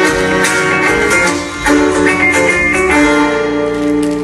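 Music: an instrumental passage of the dance song, with plucked string instruments.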